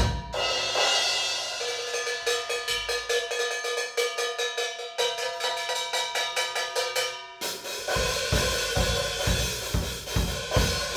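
Drum kit played live: a hit at the start, then a fast run of even strokes on a small mounted percussion block and cymbals, which ring on, with no bass drum. About seven seconds in, the full kit comes back in with bass drum, snare and cymbals.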